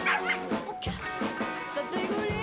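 Background music with steady sustained tones, over which a puppy gives short high yips near the start.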